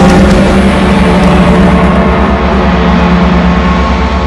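A giant metal temple bell ringing on just after being struck: a loud, deep, steady hum with a fast low throb beneath it.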